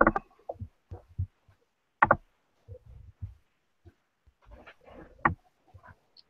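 Scattered light clicks and knocks from a computer mouse and keyboard being worked, the clearest right at the start, about two seconds in and a little past five seconds.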